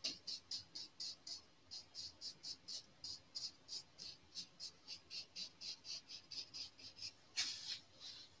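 A paintbrush working oil paint onto canvas in short, quick strokes: a rapid run of light scratching dabs, about four a second, with one longer, louder stroke near the end.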